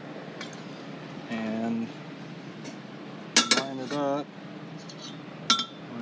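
Light metal clinks of notched chromoly tubing being handled and fitted against another tube, the sharpest about three and a half seconds in and another near the end.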